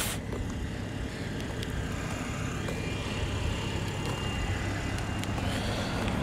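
Steady low rumble of outdoor background noise with no distinct events.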